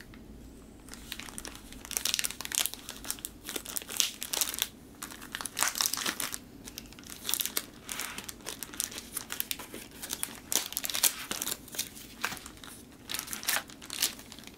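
Clear plastic sleeve of a vinyl LP crinkling in irregular crackles as the record is handled and pulled from the sleeve, starting about a second in.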